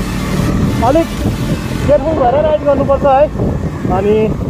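Motorcycle engine running with road and wind noise as the bike gathers speed, with a voice over it about a second in and again from two to three seconds.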